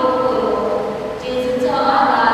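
Voices chanting a prayer in unison, holding one long note that ends about one and a half seconds in.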